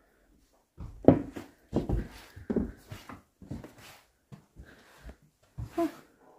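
A string of irregular knocks and thuds in a small bare room, about one every half second.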